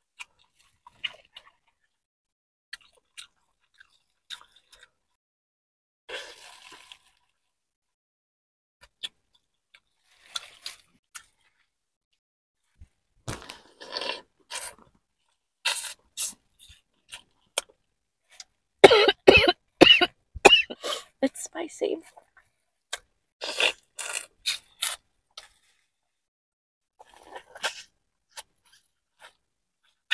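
Close-miked eating sounds of a person biting, chewing and sucking at crab legs and shrimp from a seafood boil, in scattered short bursts and clicks. A louder, busier run of mouth and voice sounds with a couple of mumbled words comes about two-thirds of the way through.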